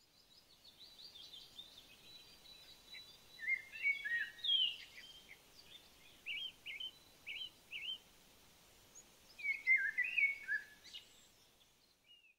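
Woodland birdsong: several birds chirping and trilling over a faint outdoor hiss. The loudest phrases come about four seconds in and again near the end, with a run of short separate chirps between them.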